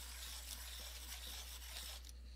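Faint, steady scratchy rubbing of a coloured pencil on paper, stopping abruptly at the end.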